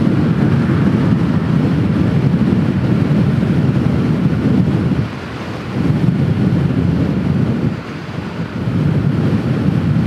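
Heavy wind buffeting on the microphone of a scooter ridden at close to its top speed, around 60 mph: a dense, low rushing that eases briefly about five seconds in and again about eight seconds in.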